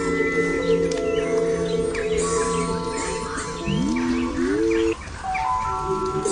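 Ambient music of sustained synth pad chords with birdsong chirps mixed in through the middle. The low chord slides upward partway through and drops out briefly about five seconds in.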